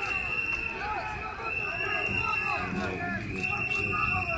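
Crowd of many voices shouting and calling over one another, with a steady high-pitched tone that breaks off briefly about every two seconds.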